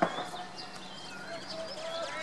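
Distant shouts and calls of field hockey players on an open pitch, short and scattered, with one sharp knock right at the start.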